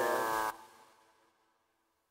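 Synthesized impact effect from the Serum software synthesizer: a downward-sliding pitched tone layered with bright white noise. It cuts off about half a second in and leaves a faint tail that fades to nothing over the next second.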